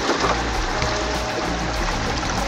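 Steady rush of stream water running through and around a gold-panning sluice box, under background music with sustained low tones.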